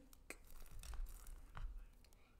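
Faint clicks and taps of felt-tip brush markers being handled on a paper sketchbook, a few separate clicks spread through the moment.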